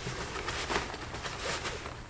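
Nylon tent fabric rustling in soft, irregular swishes as it is pulled and stretched by hand.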